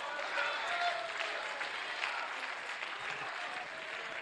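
Church congregation applauding, with scattered voices calling out over the clapping.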